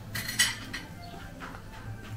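Dishes and cutlery clinking: a short clatter of sharp clinks about half a second in, then a fainter clink, in the background noise of a busy buffet.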